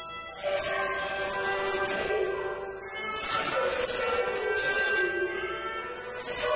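Cantonese opera (yueju) singing with instrumental accompaniment: long held sung notes that change pitch, with fresh phrases starting about half a second in and again about three seconds in.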